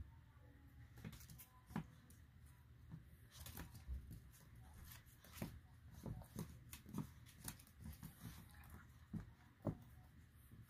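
Small dogs' claws and paws clicking and scrabbling on a hardwood floor as they wrestle, in quiet, scattered ticks at irregular times over a faint low room hum.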